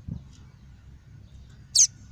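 Male papa-capim (yellow-bellied seedeater) giving a single short, sharp, high note near the end. A low rumble runs underneath, with a brief low thump at the start.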